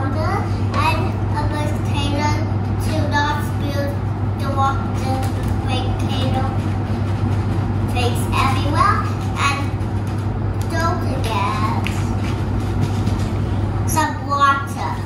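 A young child talking on and off in unclear speech, over a steady low hum.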